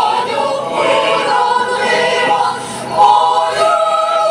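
Mixed choir of women's and men's voices singing under a conductor, the many voices blending in harmony and swelling louder about three seconds in.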